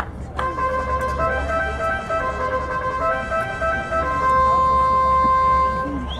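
Ballpark music over the stadium PA: a short tune of held, organ-like notes stepping between a few pitches, ending on one long high note of about two seconds that is the loudest part.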